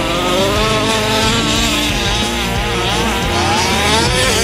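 Small two-stroke petrol engine of a 1/5-scale HPI Baja RC truck revving up and down as it drives, with background music underneath.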